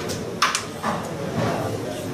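Carrom striker and carrom men knocking together on the board: two sharp clicks about half a second in, then a fainter one, with background voices.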